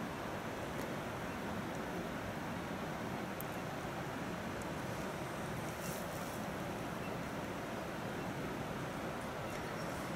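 Quiet, steady outdoor background noise, light wind on the microphone, with a few faint clicks.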